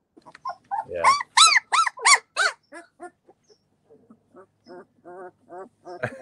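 Two-week-old Great Pyrenees puppy crying: four rising-and-falling whines starting about a second in, then a run of fainter, shorter whimpers.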